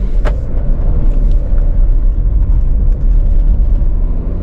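Tata Curvv's 1.5-litre four-cylinder turbo-diesel and road noise heard as a steady low rumble inside the cabin as the car drives off, with a single click about a quarter-second in.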